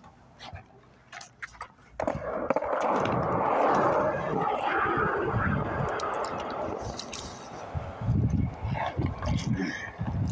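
Skateboard wheels rolling on concrete, starting suddenly about two seconds in and running steadily, with a run of low thumps over the last two seconds.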